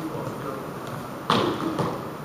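Voices murmuring in a large room, with a sudden loud thump a little past halfway through and a smaller one about half a second later.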